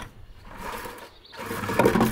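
Plastic 5-gallon bucket scraping and rubbing against the wooden grow table's frame as it is lowered into its opening, louder near the end.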